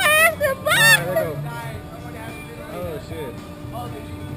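A rider's high, wavering nervous cries in the first second, then quieter background music over a steady hum.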